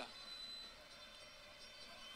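Faint, steady stadium ambience from the match broadcast, heard as a low even hiss in a pause of the commentary.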